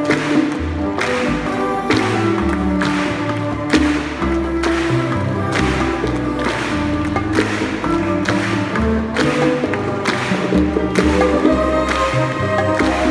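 Latin jazz band with a chamber orchestra playing live: a bass line moving under a steady percussion beat, with sustained melody notes above.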